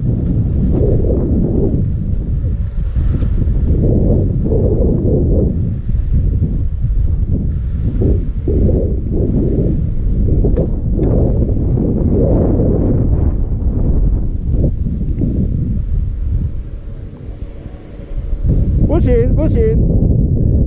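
Wind buffeting a GoPro Hero5 Black's microphone during a slow ski run downhill, a rough, uneven rumbling noise with the skis sliding over snow underneath. It drops away briefly a couple of seconds before the end, as the skier slows, and then returns.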